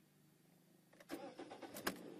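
A Toyota Vios four-cylinder petrol engine being started with the key: quiet for the first second, then a few sharp clicks and the starter cranking about a second in, with the engine catching and settling to a faint steady idle near the end. This is the first start after an ECU reset and idle relearn.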